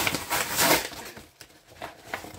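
Cardboard box being cut open with a knife: a rough cutting, tearing noise for about the first second, then dying down to a few faint rustles.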